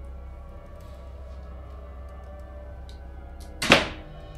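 Quiet background film score, a sustained low drone with faint held tones, broken near the end by one short, loud whoosh.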